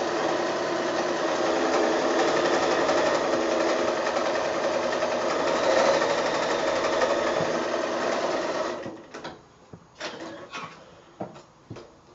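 Electric domestic sewing machine running steadily at speed, sewing a straight-stitch seam, then stopping abruptly about nine seconds in. A few light clicks follow as the machine and fabric are handled.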